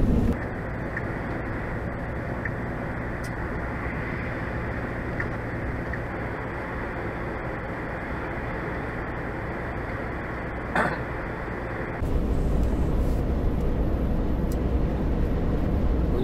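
Steady road and engine noise inside the cab of a semi-truck cruising on a highway, with a brief knock about eleven seconds in. The rumble turns louder and deeper about twelve seconds in.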